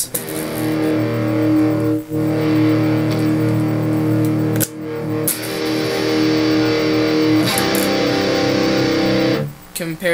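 Strat-style electric guitar with single-coil pickups playing four sustained, ringing chords, struck one after another about two to three seconds apart. The last chord stops shortly before the end.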